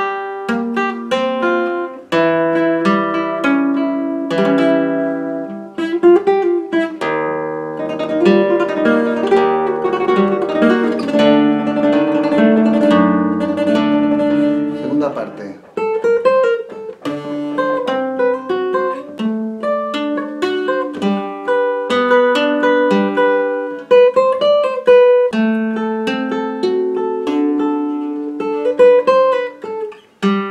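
Flamenco guitar playing a rondeña solo in rondeña tuning (sixth string down a tone, third string down a semitone) with a capo at the first fret: a plucked melody over ringing bass notes. There is a denser passage of many overlapping notes in the middle, a brief drop about halfway through, and then a steadier line of single notes.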